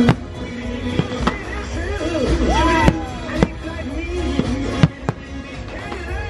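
Fireworks going off, about seven sharp bangs spread through, over a show soundtrack played on loudspeakers. The soundtrack drops from full music to a quieter passage with gliding, voice-like tones right at the start.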